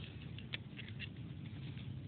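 Faint, scattered light clicks and taps of fingers handling a fountain pen, over a low steady hum.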